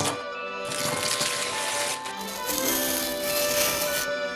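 Gift wrapping paper being torn and rustled in two long stretches, over background music with steady held notes.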